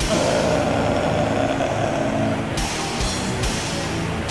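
Death/doom metal band coming in suddenly at full volume, with distorted guitars and drums; cymbals come in about two and a half seconds in.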